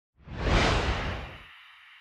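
Whoosh sound effect for a logo intro: a sudden rushing swell with a deep rumble that cuts off about a second and a half in, leaving a thin high tail that fades away.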